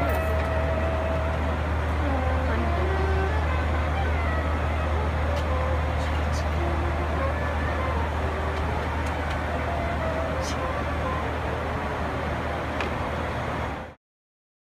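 Steady low hum of a parked airliner's cabin, with many passengers talking over it. It cuts off suddenly at the end.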